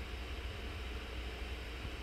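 AeroFara Aero 3 mini PC's cooling fan running at 100%, a steady, even rush of air with a low rumble beneath. At these high RPMs it is a little loud.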